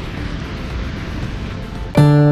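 Steady outdoor rushing noise with no distinct events, heaviest in the low end: wind on the microphone along with the rush of a distant waterfall.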